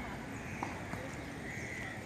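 Two faint, sharp knocks of tennis balls being struck or bouncing on a hard court, over steady outdoor background noise.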